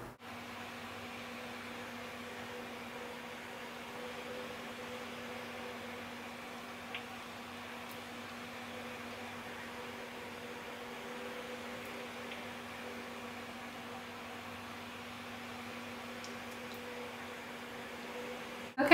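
Steady, quiet room hum with a faint hiss, like a fan or appliance running, and one faint click about seven seconds in.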